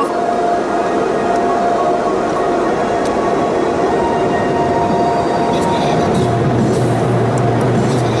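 Automatic tunnel car wash heard from inside the car: loud, steady rushing noise with a steady whine, and a deeper hum that comes in about six seconds in as the car nears the dryer blowers.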